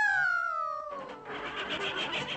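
A high-pitched, squeaky cartoon voice gives one long wail that jumps up and then slides slowly down in pitch. About a second in, the orchestral score comes in.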